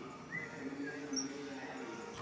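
Indoor basketball court ambience with faint voices, and one short sneaker squeak on the hardwood floor about half a second in.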